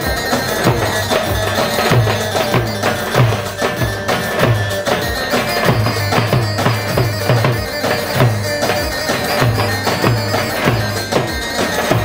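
Halay dance music: a loud, reedy wind-type lead melody over a steady drum beat of about two strokes a second.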